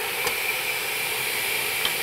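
Steady hiss of shop machinery running, with a faint high whine held on one pitch and a light click about a quarter second in.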